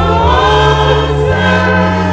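Gospel music: a choir singing long held notes over sustained bass notes, with the bass shifting pitch about halfway through.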